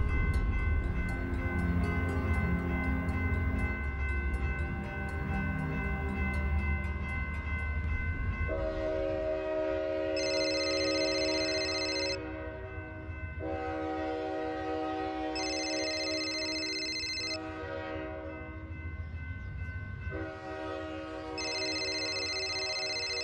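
Background score music, then about eight seconds in a mobile phone starts ringing: a repeating electronic ringtone of steady chord-like tones with a high, bright phrase that comes back every five or six seconds.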